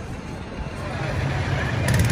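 Outdoor crowd murmur over a steady low rumble, growing louder toward the end.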